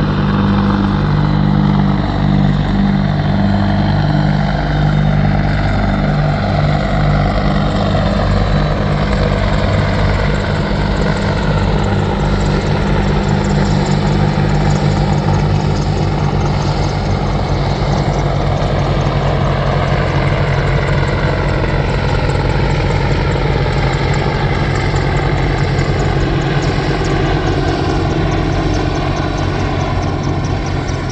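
Two UH-60 Black Hawk helicopters flying past: a loud, steady low rotor beat with a fast pulse, and turbine whines that slide slowly in pitch as the aircraft pass.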